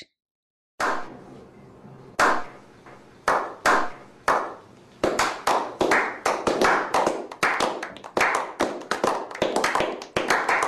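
A small group of people clapping hands in a slow clap that builds: single claps about a second apart at first, then quicker and overlapping from about halfway on.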